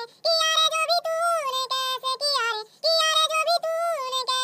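A high-pitched singing voice, holding notes in phrases, with a brief break near the start and another just before three seconds in.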